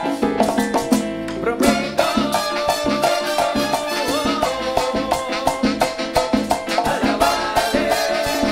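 Live band playing an instrumental passage with a steady Latin dance beat. A melody moves in held, stepwise notes over rhythmic percussion and a shaker.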